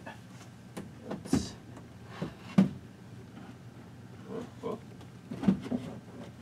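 Wooden monitor frame knocking against the wall and its 45-degree mounting brace as it is lifted and slid into place: a string of sharp knocks, the loudest about two and a half seconds in.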